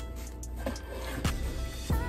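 Background instrumental beat: held tones over a steady bass, with a regular hit roughly every 0.6 seconds.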